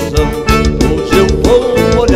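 Dance-band music in a gaucho baile style: an instrumental passage with a steady beat and sustained melody notes, no singing.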